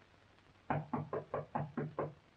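Knuckles rapping on a wooden panelled door: a quick run of about seven knocks, roughly five a second, starting a little under a second in. It is a knock for entry, which is answered with "Come in."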